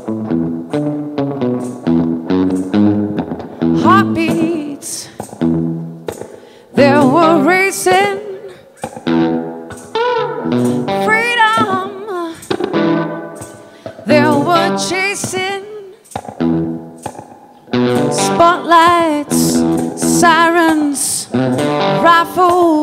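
Live blues-style music: a guitar picks a repeating riff, and about seven seconds in a wailing lead part with quick vibrato joins it in phrases over the guitar.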